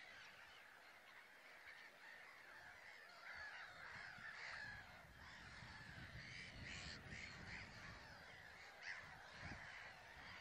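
Faint, continuous chatter of a flock of birds, many short calls overlapping. A low rumble joins about halfway through.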